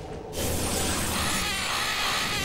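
A dramatic sound effect, a sudden rushing hiss that sets in about a third of a second in and holds steady, over background music.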